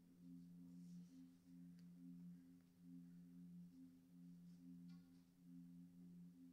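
Near silence: a faint steady low hum of two held tones, with a couple of faint clicks.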